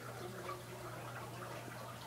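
Quiet room tone with a steady low hum and no distinct sound event.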